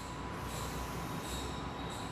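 Chalk scraping and squeaking on a chalkboard in drawn strokes as the sides of a large rectangle are drawn, over a faint steady tone.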